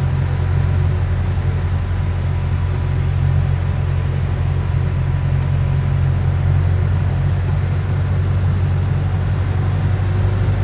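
Go-Ahead London Metrobus WHV59 running, heard from inside the passenger saloon as a steady low drone with a faint thin whine above it.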